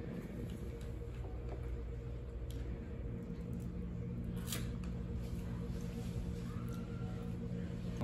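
A small slip of paper being handled and bitten, with faint rustling and a few sharp crackles, the clearest about four and a half seconds in, over a steady low hum.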